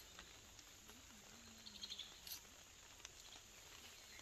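Near silence: faint outdoor ambience with a faint low hum in the middle and a few faint high ticks a little under two seconds in.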